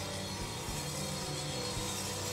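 Background music with soft, steady held notes.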